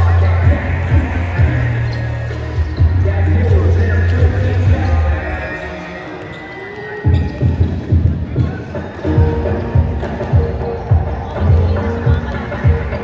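Several basketballs bouncing on a court floor in quick, uneven knocks as players dribble and shoot in warm-up, over arena music with a heavy bass line. The bass drops out about halfway through, leaving the bounces clearer.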